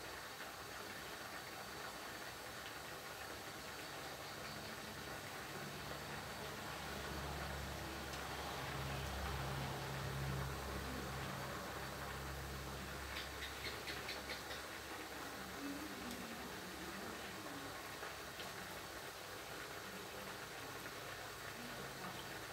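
Curry simmering in a wok, a steady quiet hiss. A low rumble swells in the middle and fades, followed by a few light clicks.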